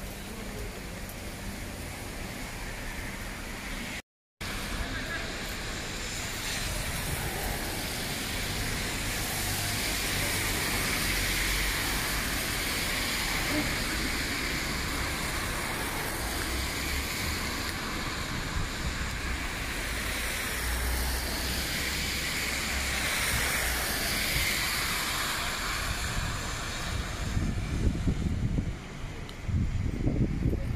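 Night-time city street ambience: steady traffic noise with voices of passers-by, growing louder after about seven seconds. The sound cuts out completely for a moment just after four seconds in, and low buffeting on the microphone comes in near the end.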